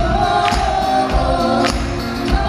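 Live pop song: a man and a woman singing long held notes together over acoustic guitar, with a tambourine struck on the beat about every half second and a steady low bass beat.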